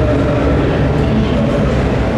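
Loud, steady background noise of a large, busy exhibition hall: a deep rumble with the blurred murmur of many voices.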